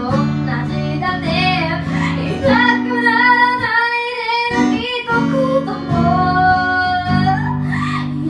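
A woman singing with her own strummed guitar accompaniment, holding long notes with vibrato; the guitar chords drop out for a moment about halfway through.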